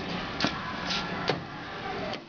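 A few light clicks and knocks, about three in two seconds, over a steady room hum.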